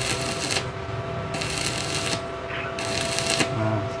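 Electric arc welding: the arc crackles and sizzles in three bursts of about a second each, with short breaks between them as the weld is laid in short runs.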